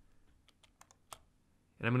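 A handful of light computer mouse and keyboard clicks, scattered over about a second.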